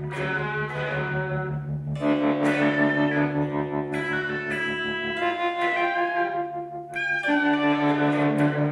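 Two amplified electric guitars, an archtop and a solid-body electric, playing a duo with sustained ringing notes and chords over a held low note; new notes are struck about two seconds in, near five seconds and again near seven seconds.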